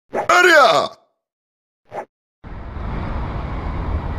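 A loud, short voiced exclamation falling in pitch, then silence and a brief blip. From about two and a half seconds in, a steady low rumble of vehicle and street traffic noise begins.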